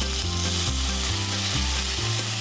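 Water poured into a hot wok of fried tamarind hisses and sizzles loudly as it hits the oil, while a spatula stirs the pan. The hiss is strongest as the pour begins and eases off toward the end.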